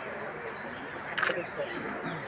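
Low murmur of several people's voices, with a short sharp click about a second in.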